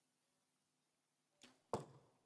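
A compound bow being shot: near silence, then a faint click about one and a half seconds in, followed a moment later by a loud sharp crack with a brief ringing tail.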